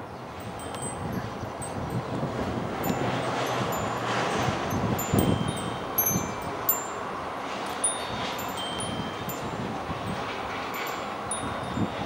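Brief, clear high-pitched ringing tones sounding at irregular moments, over wind rustling on the microphone that swells for a few seconds midway, with a few dull knocks.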